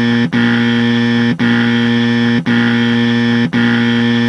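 Harsh electronic buzzer tone, loud and steady in pitch, sounding in blocks about a second long with brief breaks between them.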